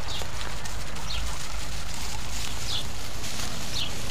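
Steady outdoor background with a low rumble, like wind on the microphone, and four short, high, falling chirps spread through it. No sheep bleat is heard.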